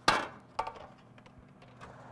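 The stainless-steel drop-down door of a half-size countertop convection oven being opened: a sharp metallic clunk that rings briefly, then a lighter click about half a second later. A faint steady hum follows, the oven's quiet convection fan.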